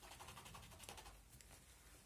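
Faint scratching and rustling of fingers rubbing over the fabric of a sneaker's upper, a run of many tiny ticks.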